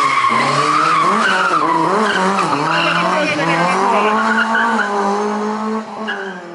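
Lada 2107 four-cylinder engine held at high revs, its pitch rising and falling, with tyres squealing as the rear-wheel-drive car slides in circles. About four seconds in, the revs settle and hold steady.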